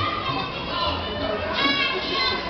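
Music with several voices over it, at a steady lively level throughout.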